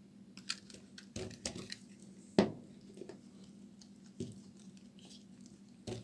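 Dry bar soap being cut with a knife and broken apart in the hands: a scattered run of crisp cracks and snaps as pieces break off, the loudest about two and a half seconds in.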